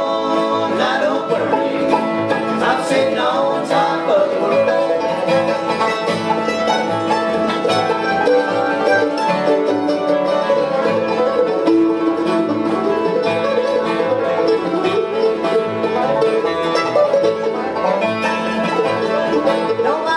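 A bluegrass band plays an instrumental break with no singing: acoustic guitars, banjo, mandolin and upright bass, with the bass keeping a steady beat.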